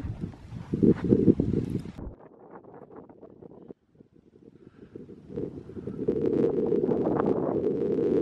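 Wind buffeting the camera microphone in gusts, with a low rumble. It drops away suddenly about two seconds in, nearly stops just before the middle, then builds again and stays strong to the end.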